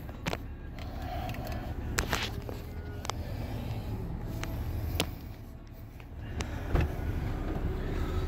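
Low steady rumble inside a parked car's cabin, with a few sharp clicks and knocks from the phone being handled and a thump near the end.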